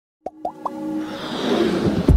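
Intro sound effects for an animated logo: three quick rising pops, then a swelling whoosh that builds up into electronic music.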